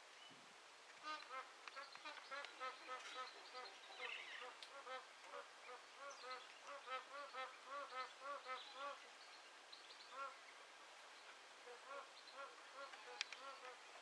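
Magpie geese honking: a long run of short, rising-and-falling honks, several a second, through the first nine seconds or so, then fewer and more widely spaced. A single sharp click near the end.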